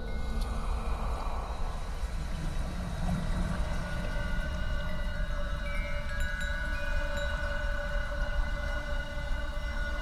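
Eerie background score: a low rumbling drone with several held high tones that come in around the middle and sustain.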